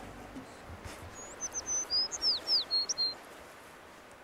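A small songbird singing one quick phrase of high, short notes, several of them falling slurs, starting about a second in and lasting about two seconds.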